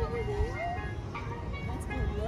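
Voices of people talking over faint music with a few held notes, on top of a steady low rumble.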